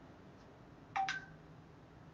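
A short two-note electronic beep about a second in, a lower tone followed at once by a higher one, over quiet room tone.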